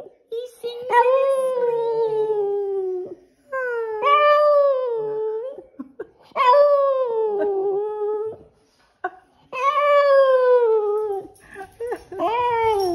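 Boston Terrier howling in his sleep, a sing-song 'singing': four long, drawn-out howls of about two seconds each, each sliding down in pitch at the end, with short pauses between.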